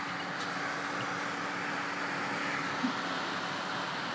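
Steady background room noise: an even hiss with a faint hum, and one small brief knock about three quarters of the way through.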